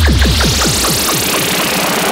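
Electronic music intro: a sudden deep bass drop with a quick run of falling pitch sweeps that gradually slow, under a rising hiss sweep.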